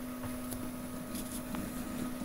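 Steady hum of a running Dell Precision 470 workstation, with a few faint clicks.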